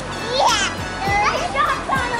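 A toddler's high voice squealing and babbling, with a sharp rising squeal about half a second in, over background music with a steady beat.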